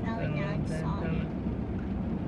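Steady low rumble of an idling vehicle heard inside its cab, with soft talking in the first second or so.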